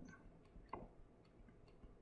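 Near silence with a few faint light ticks: a stylus tapping and sliding on a tablet screen while handwriting.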